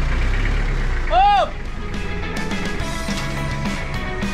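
A pickup truck's engine running with a low rumble, and a short pitched sound that rises and falls about a second in. About halfway through, background music with a steady beat comes in.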